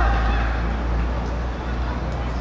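A shouted voice call breaking off right at the start, then steady outdoor noise with a strong low rumble.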